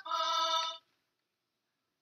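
A synthesized instrument note played by the LEGO MINDSTORMS Robot Inventor guitar's program, triggered by a button press on the hub. It sounds for under a second and cuts off suddenly.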